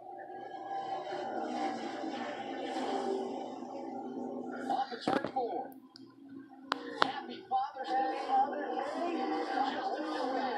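A television broadcast of the final lap of a NASCAR Xfinity stock-car race, heard through the TV's speakers in a small room: commentators talking over the steady drone of the race cars' engines. A few sharp clicks come about halfway through.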